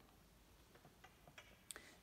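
Near silence: room tone, with a few faint short clicks scattered through the pause.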